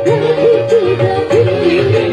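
Live band music led by an electronic keyboard: a lead melody that bends and wavers in pitch over a steady pulsing bass beat.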